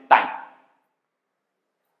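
A man's voice says one word, "time", which trails off within about half a second, followed by dead silence at an edit.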